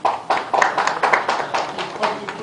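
Applause from a small group: quick, irregular hand claps, several a second.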